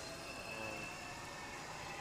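Quiet outdoor background: a steady low hiss with a faint, thin high tone.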